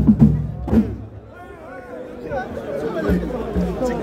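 Drums beating in rhythm with voices over them, stopping about a second in, then a crowd of men's voices talking and calling over one another.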